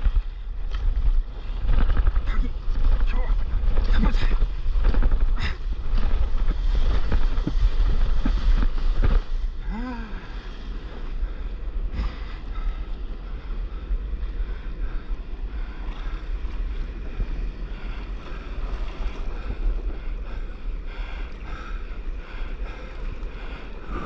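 Water rushing and splashing against a camera mounted low on a stand-up paddleboard riding a wave, with wind buffeting the microphone. It is loud and choppy with many sharp splashes for the first nine seconds or so, then settles into a quieter, steadier wash.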